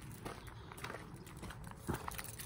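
Footsteps on gravel and grass: a few soft, irregular steps, with one sharper knock near the end.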